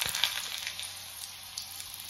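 Hot oil sizzling in an iron kadhai just after chopped food has gone in, with a steady hiss and sharp crackles and spits; it is loudest at first and eases off a little.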